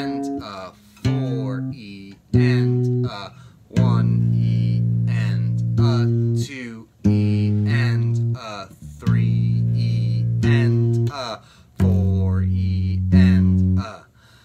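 Four-string electric bass guitar playing a syncopated octave riff, its low notes held one to two seconds with short gaps between phrases, while a man counts the sixteenth-note rhythm aloud.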